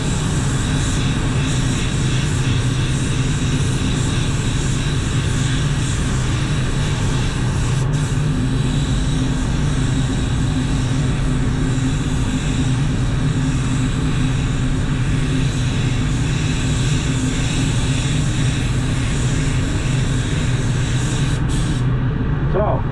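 Automotive paint spray gun hissing steadily as base coat is sprayed. The hiss cuts out for an instant about eight seconds in and stops shortly before the end, over the low steady drone of the spray booth's fans.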